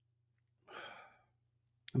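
A person's audible breath, about half a second long, a little under a second in, just before speech begins.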